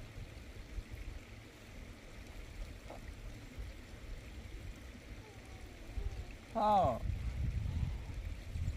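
Uneven low rumble of outdoor background noise, with one short falling voice sound about two-thirds of the way through.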